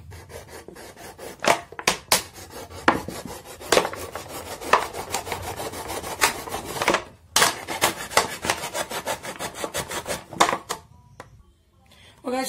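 Kitchen knife sawing through a thin clear plastic bottle: a fast run of scraping strokes, with louder sharp strokes now and then. The cutting stops about a second before the end.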